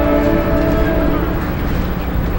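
Marching band brass, sousaphones among them, holding a loud sustained chord that thins out in the second half, with a new chord entering just after.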